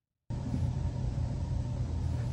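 Steady low room rumble with a faint constant hum, cutting in abruptly about a third of a second in after dead silence.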